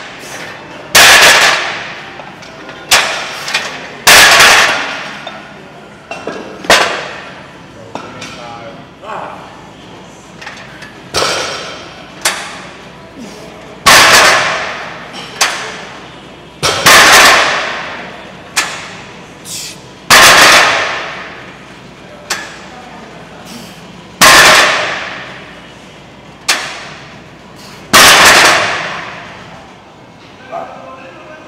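Loud metallic clangs from a loaded strongman yoke frame and its plates as it is pressed overhead and lowered, repeated every few seconds. Each clang rings out and echoes for about a second.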